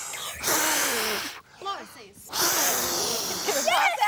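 A man blowing hard in long breathy blasts, about a second each, twice, at a candle shielded by a cylinder. His breath curls around the cylinder and puts the candle out. Laughter joins in near the end.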